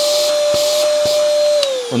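VACTIDY V8 cordless stick vacuum's motor unit running at its loud high-suction stage: a steady hiss with a high whine. About one and a half seconds in it is switched off, and the whine falls as the motor winds down.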